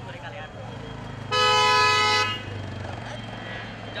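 A car horn honking once, held for about a second.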